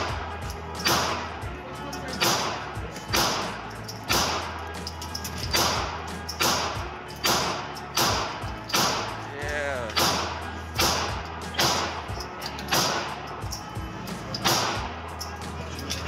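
A .45 semi-automatic pistol fired in a steady string, about fifteen shots a little under a second apart.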